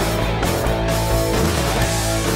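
Rock music played on a Red Special–style electric guitar in a full band mix with a steady low bass line and regular strikes.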